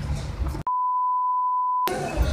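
An edited-in censor bleep: a single steady, high, pure beep lasting a little over a second. It starts about half a second in, and all other sound drops out while it plays.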